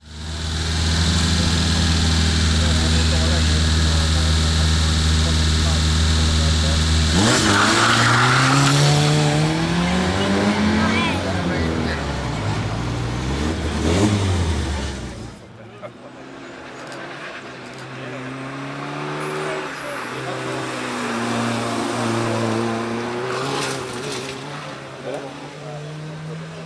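Suzuki Swift rally car engine, first held at steady revs for several seconds, then climbing and dropping in pitch through several gear changes as the car accelerates hard. About halfway through it becomes quieter and more distant, still revving up through the gears.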